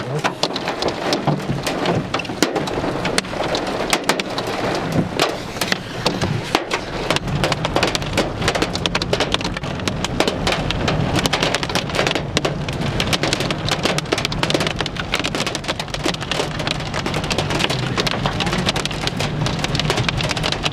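Rain pelting a car's windscreen and roof from a supercell thunderstorm: a dense, continuous spatter of sharp ticks that thickens about six seconds in, over the steady low hum of the car driving.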